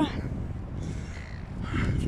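Low wind rumble on the phone microphone, with a bird calling briefly near the end.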